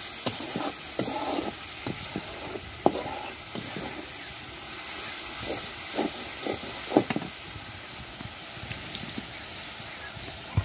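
Spiced onion mixture sizzling in a karai, with a spatula scraping and clicking against the pan as it is stirred. The sharpest knocks come about three and seven seconds in.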